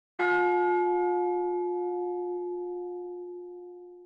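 A single bell-like chime struck once, ringing out and slowly dying away over about four seconds.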